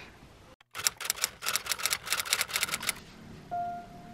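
A fast run of sharp clicks or taps, about eight a second, lasting around two seconds right after a brief cut to silence. Soft piano notes begin near the end.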